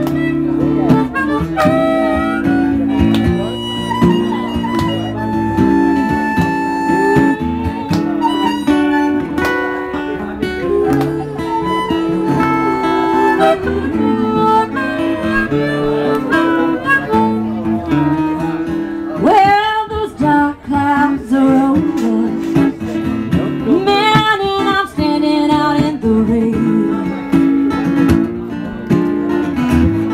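Live band playing a slow blues, with guitar chords underneath and bending lead notes over them.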